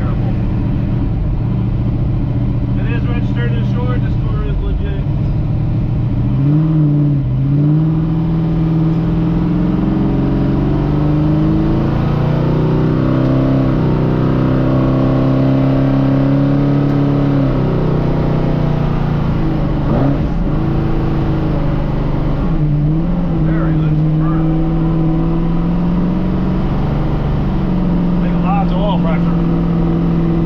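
1956 Chevrolet gasser's engine heard from inside the cabin while driving, running on a freshly installed carburetor and driven gently while it warms up. The revs climb steadily for several seconds, drop back, hold, and climb again near the end.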